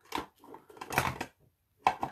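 Light handling clatter from craft supplies on a tabletop: a few short clicks and knocks, one brief cluster just after the start and another around one second in.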